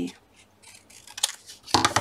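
Craft scissors cutting through a strip of card, with faint rustling and one sharp snip a little past the middle.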